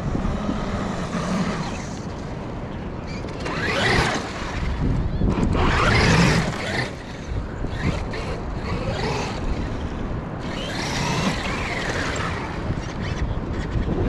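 Traxxas X-Maxx 8S RC monster truck's brushless electric motor and drivetrain whining as it is driven on sand on paddle tires. It rises and falls in pitch in three hard bursts of throttle, about four seconds in, about six seconds in, and again near eleven seconds.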